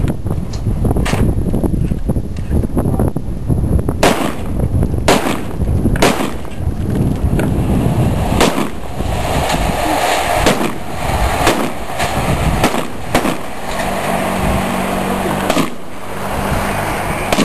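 A string of gunshots fired at uneven intervals, some in quick pairs, over a steady low rumble.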